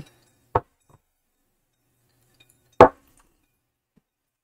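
Two brief sounds against near silence: a faint short click about half a second in, then a louder clink near three seconds, as a drinking glass is handled and set down on a table.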